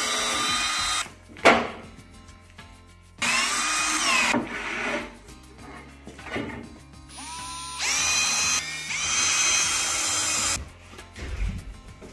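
Cordless drill with a countersink bit boring pilot holes in oak: about four short runs of motor whine, each rising as it spins up and sagging under load, the last and longest near the end. A sharp knock comes just after the first run.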